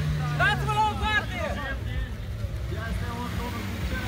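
Suzuki Jimny 4x4's engine running steadily at low speed as it crawls through a muddy rut, with a steady low tone that drops away about a second in. Voices call out over it.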